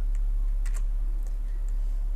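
A few faint, separate clicks from a computer keyboard and mouse as a text search is run, over a steady low electrical hum.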